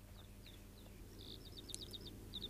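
Faint birdsong: short high chirps, scattered at first, then a quick run of them near the end, over a low steady hum.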